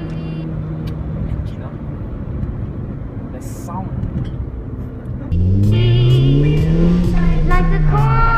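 Engine and road noise inside the cabin of a 2006 Suzuki Swift Sport on the move. About five seconds in, a much louder sound cuts in suddenly: a voice over a pitch that rises and then falls.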